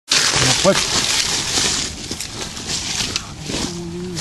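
Rustling and crackling of dry brush and undergrowth as someone moves through it, loudest in the first two seconds and then easing off.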